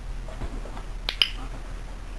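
A dog-training clicker gives one sharp double click, press and release, about a second in. In clicker training this click marks the dog's nose push against the ball.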